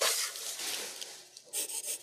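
Pencil scratching across paper in quick sketching strokes: a loud stroke at the start, then a softer stretch, then another burst of strokes about one and a half seconds in.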